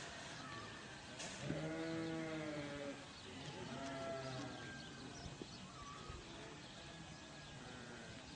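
Livestock bleating faintly: one long call about a second and a half in, a shorter call around four seconds, and fainter calls later, over a quiet steady outdoor background.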